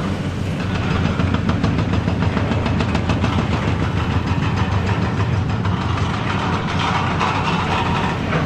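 High-reach demolition excavator (Hitachi ZX870 with telescopic boom) working: a steady diesel engine drone under a dense crackle of concrete crushing and debris falling, the crunching growing louder near the end.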